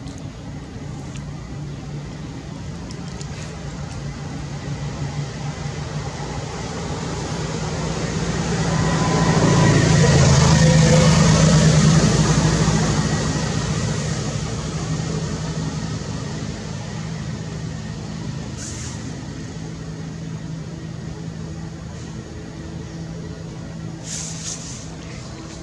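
A motor vehicle driving past: engine and road noise swell to a peak about ten seconds in, then fade away over the next several seconds, over a steady low hum.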